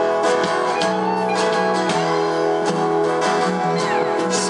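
A live rock band playing an instrumental passage with no vocals: strummed guitar with drums and keyboard, the notes held and ringing.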